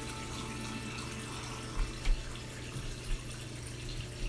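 Steady trickle and wash of a reef aquarium's circulating water, under a low steady hum, with a few faint bumps about halfway through.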